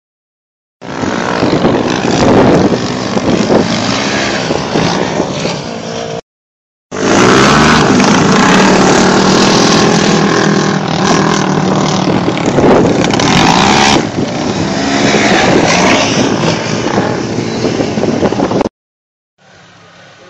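Loud, distorted sound of off-road vehicle engines running and revving, with the pitch rising and falling. It is broken by a short silent cut about six seconds in, changes at about fourteen seconds, and ends abruptly near the end.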